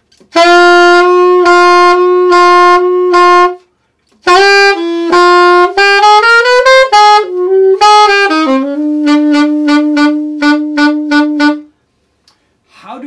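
Alto saxophone demonstrating ghost-tonguing: a repeated note is played first, then after a short pause a moving jazz line. The line ends on a held low note that is muffled about four times a second without stopping. The tongue lies lightly on the reed, so the reed keeps vibrating but the note is muffled into a 'ghost of a note'.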